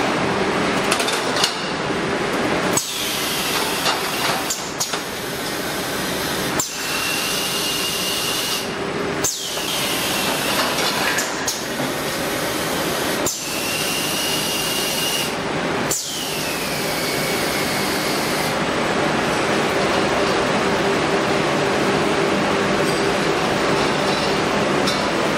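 Plastic-film shrink wrapping machine running: a steady mechanical hum, with a sharp clack roughly every two seconds as the film sealing cycle runs, each clack joined by a burst of hiss. The clacks stop about two-thirds of the way through, leaving the steady running noise.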